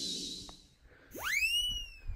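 A whistle sound effect sliding steeply up in pitch about a second in, then levelling off and bending slightly down. Before it, a hiss with a faint wavering high tone fades out in the first half second.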